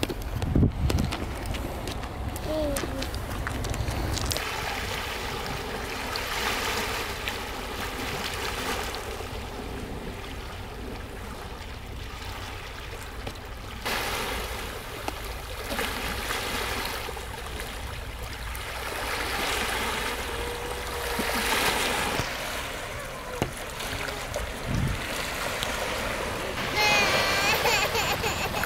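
Small waves washing onto a rocky shore, the rush of water swelling and fading every few seconds.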